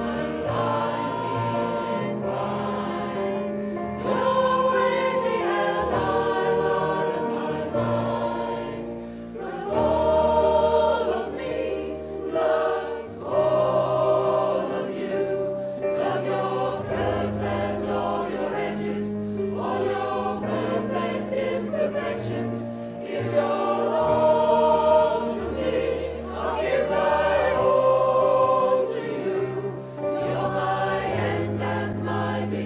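Mixed choir of men and women singing a song together, with sustained low notes under the melody.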